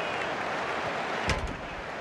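Steady hiss of football-match pitch ambience in a near-empty stadium, with a single dull thump a little past halfway.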